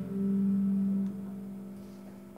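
Gibson Les Paul electric guitar's closing note ringing out: one low note with its octave sustains, drops in level about a second in, then fades away.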